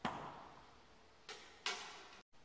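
Horse's hoof stepping on a concrete floor: two separate clops in the second half, about a third of a second apart, each with a short echo, after a sharp click right at the start.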